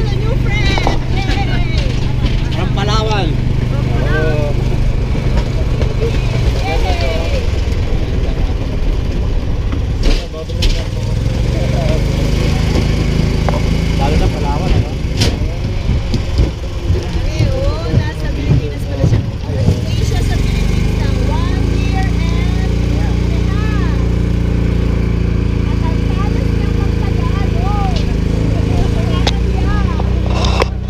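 Multi-passenger shuttle cart's motor running steadily, its pitch rising as the cart speeds up about a third of the way in and again about two-thirds in. A few sharp knocks and the riders' indistinct voices come through over it.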